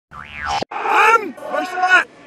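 Audio played in reverse: a short sound effect glides up and back down in pitch for about half a second and cuts off sharply, then a voice played backward, unintelligible.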